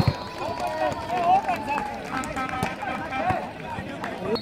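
Several voices of volleyball players and spectators shouting and calling over one another between points, with a single sharp knock at the very start.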